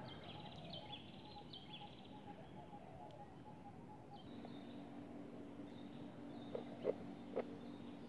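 Faint outdoor garden ambience with soft, repeated high bird chirps in the first couple of seconds. A low steady hum joins about halfway through, and a few soft clicks come near the end.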